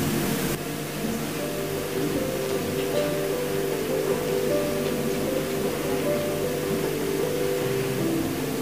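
Background music of slow, held notes over a steady hiss.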